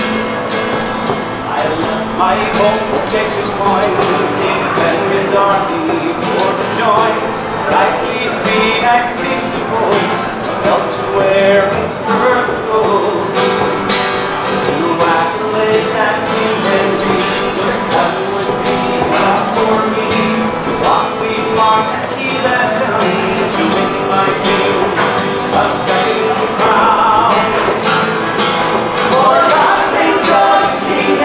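Acoustic guitar strummed in a steady rhythm, with voices in the room over it.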